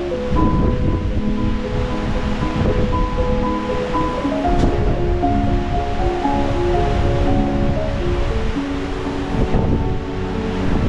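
Background music, a slow melody of held notes, over a steady rush of wind and water noise.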